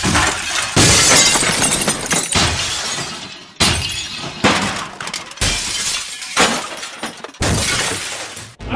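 A run of loud crashes with a breaking, shattering quality: about seven sudden hits spread through the few seconds, each dying away quickly.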